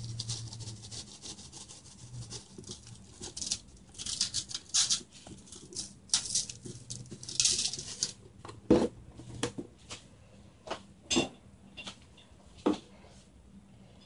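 Dry seasoning shaken from a Mrs. Dash shaker onto fish steaks on aluminium foil, in a few short rattling bursts, followed by several separate sharp clicks and taps.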